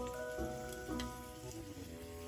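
Soft crackling sizzle of sliced onions cooking in a miniature steel pan, heard under gentle background music, with a light metallic click about a second in.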